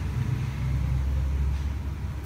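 A low, steady rumble with no speech over it.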